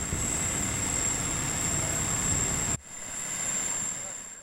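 Truck crane's engine running steadily as it lowers a heavy load, a broad even noise. It cuts off abruptly about three-quarters of the way through, then comes back quieter and builds up again.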